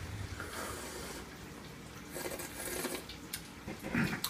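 Two people sipping and slurping hot coffee from mugs, the loudest slurp about two seconds in, with a few soft clicks near the end.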